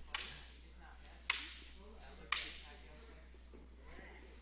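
Three sharp clacks of shinai training swords striking each other, about a second apart, each trailing off briefly.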